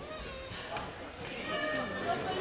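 Indistinct voices of several people talking in a large, echoing sports hall, getting louder from about halfway.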